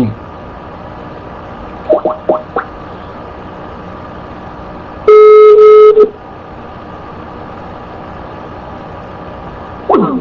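Telephone call audio: steady line hiss with a few brief faint sounds about two seconds in, then a single loud, steady telephone tone lasting about a second midway through.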